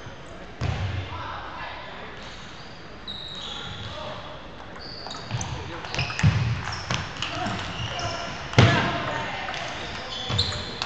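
A table tennis rally in a reverberant gym hall: the celluloid ball clicks off paddles and the table, and rubber-soled shoes squeak briefly on the wooden floor. Heavier thuds of footwork come in the second half, the loudest a little before the end, with voices from nearby tables underneath.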